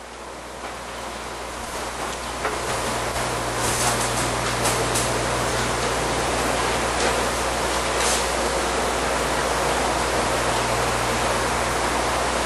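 Steady hiss of room and microphone noise with a low electrical hum underneath. It grows louder over the first few seconds, then holds level, with a few faint clicks.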